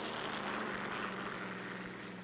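Aircraft engine drone: a steady low hum with a rushing hiss over it, easing slightly in pitch and loudness near the end.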